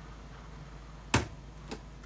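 Two clicks as a hand turns a display turntable carrying a LEGO model: a sharp one a little over a second in and a fainter one shortly after, over a low steady hum.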